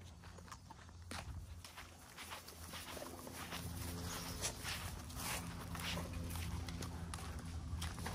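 Quiet footsteps and scuffling of a person walking with pit bulls that run and play-wrestle on grass, a string of soft clicks and scuffs over a faint low steady hum.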